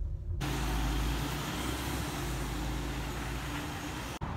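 A single-decker bus pulling away from a stop: a steady engine hum with road noise, slowly getting quieter as it goes.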